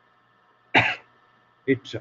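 A man coughs once, a single short burst a little under a second in, with quiet around it.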